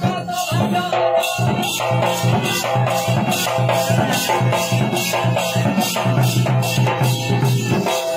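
Odia danda folk song performed live: singing over a large two-headed barrel drum, with a rattle keeping a quick, steady beat.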